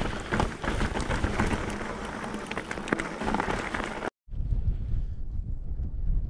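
Mountain bike rolling over a rocky limestone track: tyre noise with a rapid clatter of small knocks from the bike and stones, and wind on the microphone. It cuts off abruptly about four seconds in, leaving a quieter low wind rumble on the microphone.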